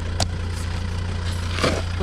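Volvo car engine idling steadily, with a single sharp click just after the start and a short rustling burst about a second and a half in.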